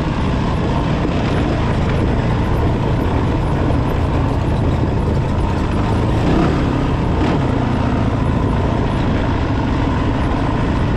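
Honda 450's single-cylinder engine running steadily as the machine rides along a rocky dirt trail, heard from the onboard camera. The engine pitch drops briefly about six seconds in.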